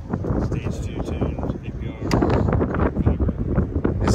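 Wind buffeting the microphone with a low rumble, under background voices; it gets louder about halfway through.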